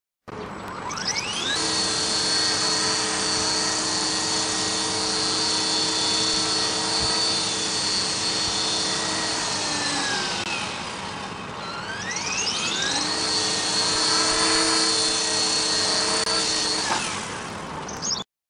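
Esky Belt CP electric radio-controlled helicopter spooling up: its motor and rotors run with a rising whine, hold a steady pitch, wind down about ten seconds in, spool up again a couple of seconds later, and wind down once more near the end.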